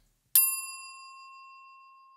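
A single bell ding: one strike about a third of a second in, ringing one clear high tone that slowly fades.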